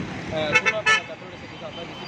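A man's voice for about the first second, then steady street background noise.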